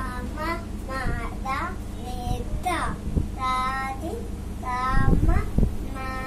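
A toddler's high-pitched, wordless sing-song vocalizing, with several long held notes. A few low thuds come about five seconds in.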